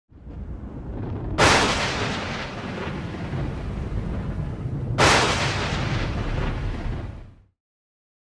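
Intro sound effect: a low rumble with two loud boom-like impact hits about three and a half seconds apart, each fading away slowly. It dies out about half a second before the end.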